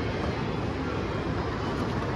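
Steady shopping-mall background noise: an even wash of crowd murmur, footsteps and low room rumble echoing off hard floors.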